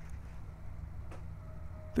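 Low steady background rumble, with a single faint click a little over a second in.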